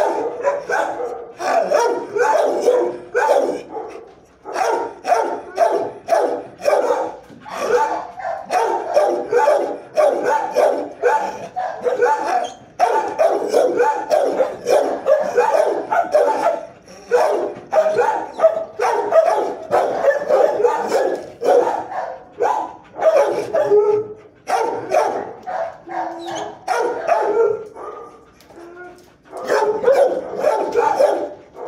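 Shelter dogs barking almost without pause, several short barks a second, with brief lulls near the end.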